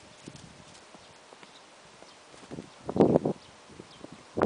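An Icelandic horse's hooves on grass as it walks up. There are faint scattered ticks, then a cluster of louder, dull thuds about three seconds in.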